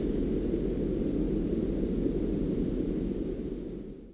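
Steady low, rumbling background noise with no voice or tune, fading out near the end.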